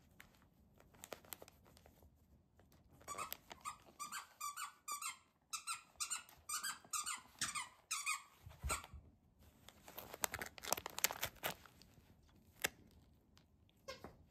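Short, high squeaks in quick succession, about three a second, as a kitten bites and paws at a foil-wrapped package of pet toys. They are followed by a burst of crinkling and rustling of the foil wrapping paper.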